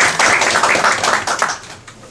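A group of people clapping, a dense patter of handclaps that fades away about one and a half seconds in.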